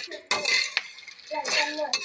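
A metal spatula scraping and stirring kabok seeds (Irvingia malayana kernels) as they dry-roast in a pan. The hard seeds clink against the metal, with sharp scrapes about a third of a second and three quarters of a second in.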